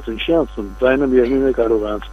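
A man talking over a telephone line, the voice narrow and cut off above the mid-highs, with a steady low mains hum underneath.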